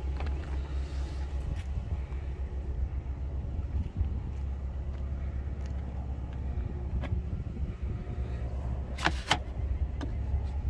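Steady low hum of an idling vehicle engine, with a few light clicks and two sharp clacks near the end as the bed extender's latch is handled.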